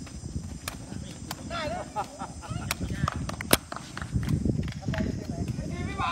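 Sharp hits of a sepak takraw ball being kicked back and forth, the loudest about three and a half seconds in, with players' voices calling out between the hits.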